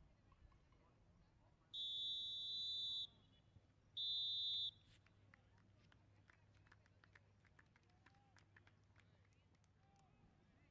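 Referee's whistle blown twice, a long blast of over a second and then a shorter one, a steady high-pitched tone each time, marking the end of the first half.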